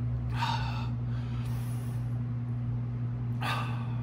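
A man breathes out hard twice, once shortly after the start and again near the end, after downing a shot of chili-pepper vodka. A steady low electrical hum runs underneath.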